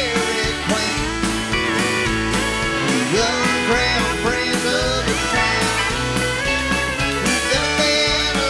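Live country band playing an instrumental passage: fiddle and electric guitar lines with bass and a steady drum beat.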